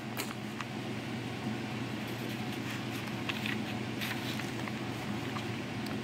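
Steady low room hum with a few faint paper rustles as the pages of an old paperback almanac are handled and turned by hand.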